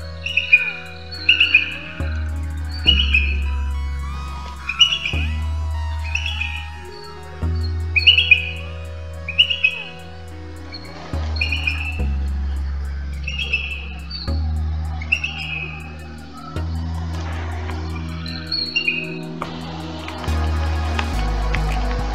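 A recording of booted eagle calls: a series of short, high, chirping notes, roughly one a second, that stop shortly before the end. Steady background music with low bass notes runs underneath.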